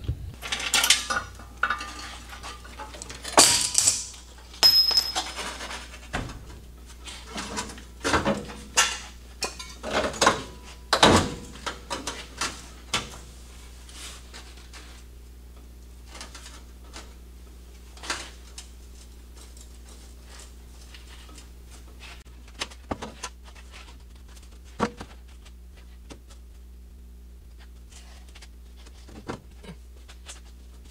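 Steel clanks and knocks from the cut frame rails of a Ford F100 pickup as the shortened rear section is rolled forward and worked against the front section to line up the cut. The knocks come thick and fast for the first dozen seconds, then only now and then, over a steady low hum.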